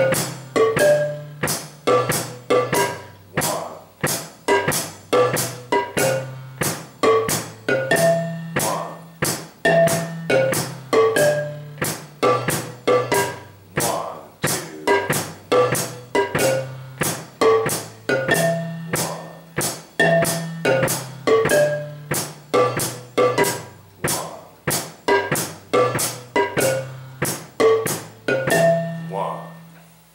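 Baritone marimba, its wooden bars struck with mallets, playing a slow repeating verse pattern of low notes at about two strokes a second, each note ringing briefly. The last note fades out near the end.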